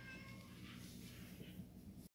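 Domestic cat giving a short, faint meow that ends about half a second in.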